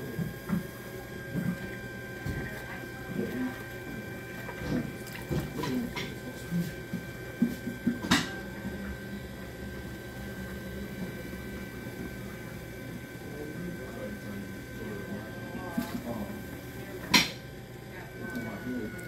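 Electric pottery wheel running with a steady whine while wet clay is pressed and centered by hand on the spinning wheel head, with soft wet rubbing. Two sharp knocks, about eight seconds in and near the end.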